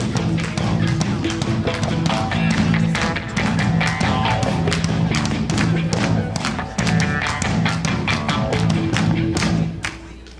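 Live band playing a rock-style worship song on electric guitars over a steady beat, ending at the very close.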